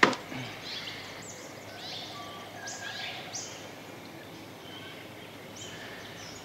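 Bush ambience: birds calling with short, high, descending whistles and chirps scattered over a steady low hiss, with a sharp click right at the start.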